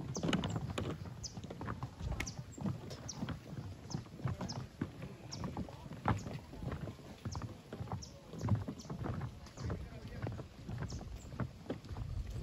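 Outdoor ambience: wind rumbling on the microphone, with scattered short high bird chirps and irregular soft knocks.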